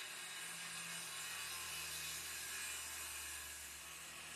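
Makita circular saw running steadily as its blade cuts along a wooden board, a constant whir under the noise of the cut.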